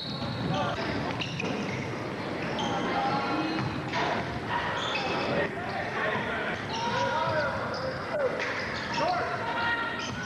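Basketball bouncing on a hardwood gym floor during play, with players' and spectators' voices echoing around the gym.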